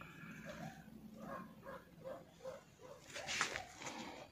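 A dog breathing softly and rhythmically, about three breaths a second, worn out from running about. A louder rustle comes in the last second.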